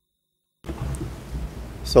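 Silence, then about half a second in the courtroom microphone feed cuts in with a low rumble and faint rustling of room noise; a man starts speaking right at the end.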